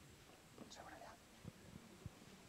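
Near silence: room tone, with a faint whispered voice near the middle.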